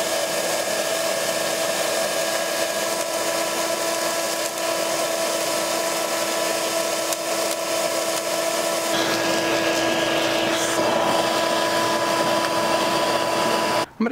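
Shop vacuum running steadily with a whine, its hose nozzle drawn along the windshield cowl channel to suck out pine needles and dirt. The tone shifts about nine seconds in.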